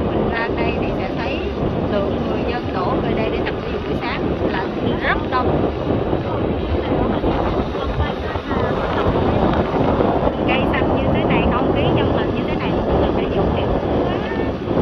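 Wind rumbling loudly and steadily on the microphone, with short high chirps of small birds in groups over it, near the start, around the middle and again near the end.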